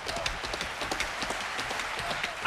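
Theatre audience applauding, a steady spatter of many hands clapping.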